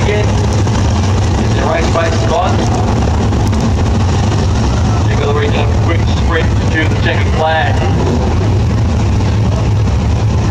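Several 410 sprint car V8 engines running steadily at low speed as the field rolls around under a yellow caution, a loud continuous low rumble. A voice comes through at times over the engines.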